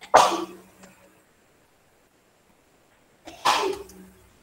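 A person sneezing twice, about three seconds apart.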